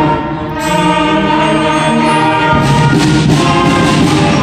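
School concert band playing held chords, with flutes and clarinets among the instruments; the sound dips briefly just after the start, then comes back full.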